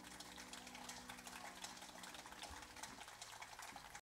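Faint audience applause, a dense patter of clapping, as a grand piano's final chord dies away over the first couple of seconds.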